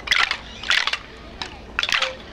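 Hand-held bamboo sticks struck by several players in bursts of rapid, clattering clicks: three irregular clusters, near the start, just before the middle and near the end.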